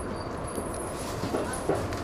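Running noise of a train heard from inside, rolling slowly into a station, with two short sharp squeaks or knocks about a second and a half in.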